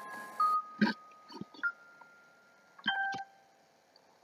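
Soundtrack of a stick-figure animation played through laptop speakers: a few held electronic tones, one after another, with several short clicks and knocks. The loudest clicks come about a second in and near three seconds.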